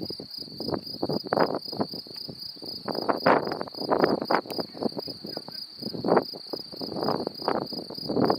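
An insect, cricket-like, chirping steadily in a high, evenly pulsed trill. Louder irregular gusts of rushing noise come and go over it.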